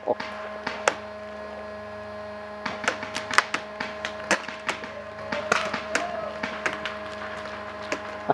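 Irregular sharp pops of paintball markers firing across the field, a few bunched together about three seconds in and again around the middle. A steady faint hum runs underneath.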